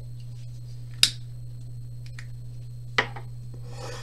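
Two sharp clicks about two seconds apart, with a fainter click between them, over a steady low hum.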